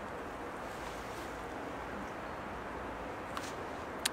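Faint steady background noise with a low rumble, like light wind on the microphone; one small click about three and a half seconds in.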